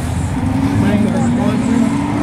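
A vehicle engine running, its note rising slowly and steadily in pitch, over faint voices.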